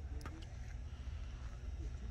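Quiet outdoor ambience with a steady low rumble and a couple of faint clicks early on.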